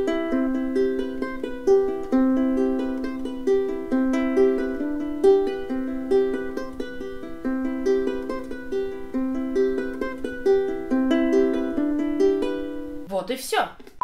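Ukulele fingerpicked in an arpeggio: single plucked notes in a steady repeating pattern, a low note recurring every couple of seconds under higher notes. The picking stops about a second before the end, and a brief, garbled, noisy burst follows.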